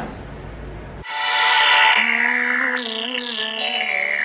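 Faint room tone for about a second, then intro music starts suddenly: a held low note with repeated falling pitch sweeps above it.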